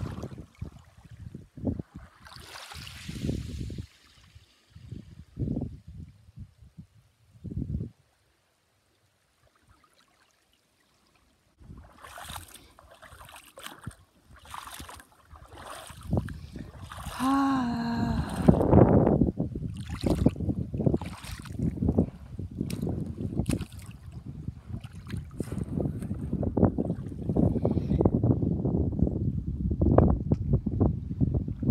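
Wind buffeting the microphone over shallow sea water lapping on a pebble beach, in uneven gusts with a few seconds of silence about eight seconds in. About seventeen seconds in comes a brief vocal cry, and the wind and water noise then runs denser to the end.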